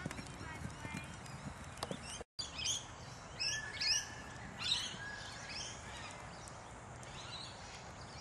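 A horse cantering on grass, its hoofbeats faint under distant voices. Short sweeping high bird calls come repeatedly after a brief dropout about two seconds in.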